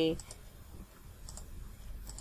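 A couple of faint computer mouse clicks about a second and a half in, over quiet room tone.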